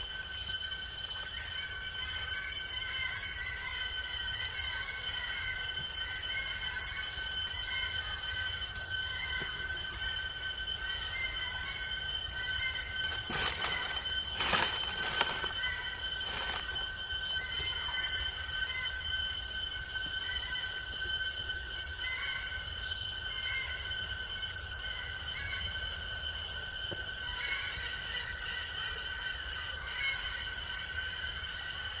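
Steady, high-pitched drone of forest insects, with short chirping calls scattered through it and a few sharp clicks about halfway through.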